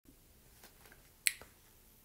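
A single sharp click about a second and a quarter in, over quiet room tone with a few fainter ticks.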